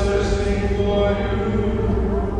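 A cantor's voice chanting the responsorial psalm in long held notes, with sustained organ chords underneath.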